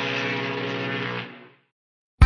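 A steady drone of several fixed pitches held together, fading out about a second and a half in.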